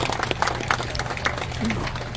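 Scattered hand clapping from a small crowd of spectators, with one pair of hands clapping close by, as a round of applause for the showmanship class.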